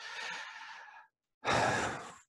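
A man breathing audibly close to the microphone in a pause of his speech: one breath lasting about a second, then after a short silence a second, louder breath.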